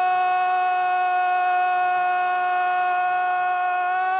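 One long, steady tone held at a single unwavering pitch, rich in overtones, like a horn or electronic beep.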